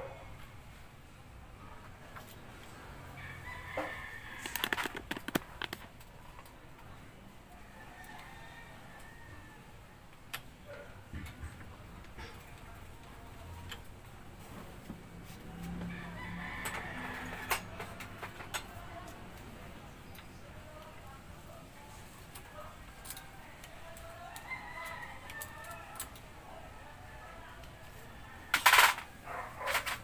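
A rooster crowing in the background several times, each crow about two seconds long. Scattered clicks and a loud, sharp clatter near the end come from work on the engine.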